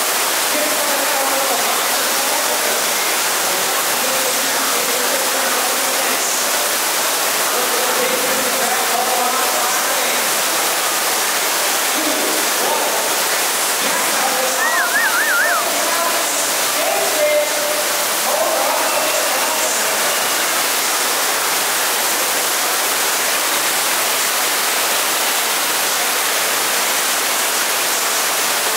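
FlowRider sheet-wave machine, a thin sheet of water pumped at speed up and over the ride surface, making a steady, loud rush like a waterfall.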